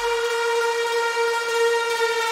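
Electronic music breakdown with no beat: a single held synth tone, bright and horn-like, rings at one steady pitch while a low bass note fades away just after the start.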